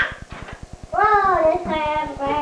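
A person singing: after a brief dip near the start comes one long held note that bends up and down in pitch, over a low rapid buzz.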